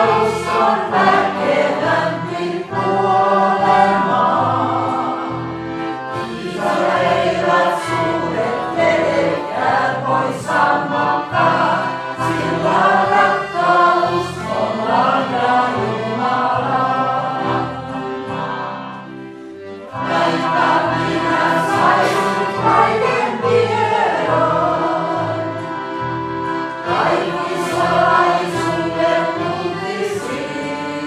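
A congregation singing a hymn together in unison, led from the front, with a brief lull in the singing about two-thirds of the way in.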